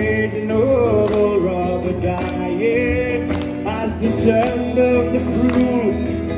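Live folk band music between sung lines: acoustic guitar and drums keep a steady beat under an ornamented lead melody.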